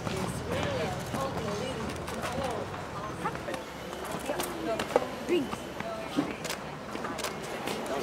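Indistinct chatter of several voices, with scattered sharp clicks.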